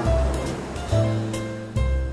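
Instrumental jazz with a low bass line moving note to note, mixed over the wash of ocean surf on a beach; a wave washes in at the start.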